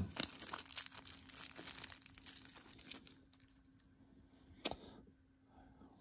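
Small clear plastic bag crinkling as it is handled and picked open for a tiny screw, a run of faint crackles over the first three seconds. A single sharp click follows near the end.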